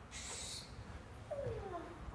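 A quiet room with a brief soft hiss near the start, then a faint short falling vocal sound about one and a half seconds in.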